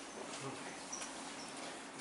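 Whiteboard marker squeaking faintly on the board as a word is written, in a few short high squeaks.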